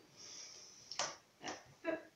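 A plate being handled: a faint scrape as it is taken up, then a few light knocks as it meets the hollowed-out pineapple shell, with a short spoken 'Hop' near the end.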